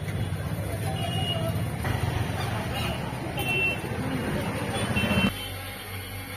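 Street traffic noise with a few short high horn toots and voices in the background. About five seconds in it cuts to a quieter indoor hum.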